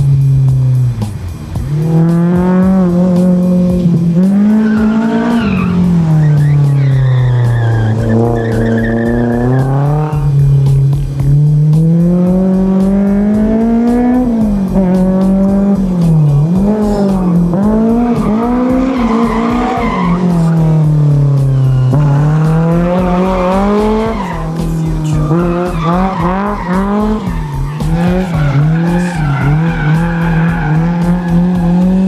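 Honda S2000's JS Racing-built four-cylinder engine revving hard while drifting, its pitch sweeping up and down again and again, with tyre squeal. Background music with a steady beat plays underneath.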